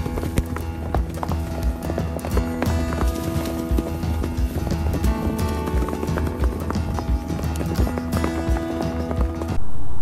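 Hoofbeats of several galloping horses mixed with a music soundtrack of sustained notes. It cuts off abruptly shortly before the end.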